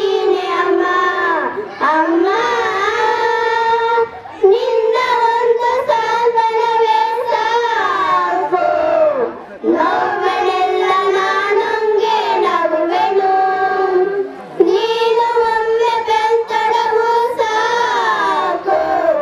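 Children singing a song together into microphones, in long held phrases broken by brief pauses about every five seconds.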